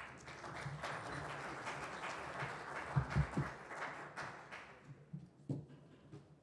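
Audience applauding, starting at once and fading out over about five seconds, with a couple of low thumps about halfway through.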